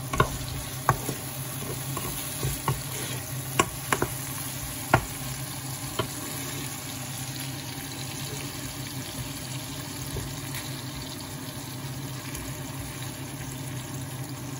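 Sliced onions and tomatoes sizzling in oil in a granite-coated wok, stirred with a wooden spatula that knocks and scrapes against the pan several times in the first six seconds. After that, only steady sizzling.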